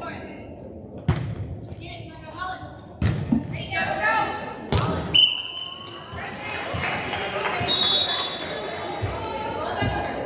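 A volleyball being struck during a rally: three sharp smacks about two seconds apart, followed by overlapping voices of players and spectators.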